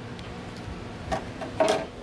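A few faint light taps and clicks as a fiberglass front lip is handled and held against a car's front bumper, over a low steady hum, with a brief louder sound about one and a half seconds in.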